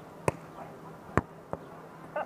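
A volleyball being hit twice during a rally, two sharp hits about a second apart, followed shortly by a fainter third knock.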